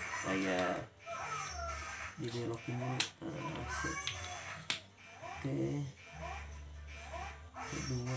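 Background talking and music over a low steady hum, with two sharp clicks about three and four and a half seconds in.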